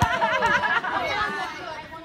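Children's voices chattering and calling out over one another, fading toward the end, with a single knock at the very start.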